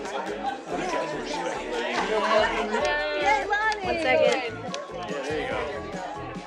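Many people talking at once in a crowded room, with background music playing under the chatter.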